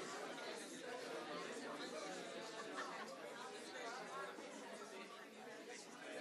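Indistinct chatter of many people talking at once in a large meeting room, with no single voice standing out.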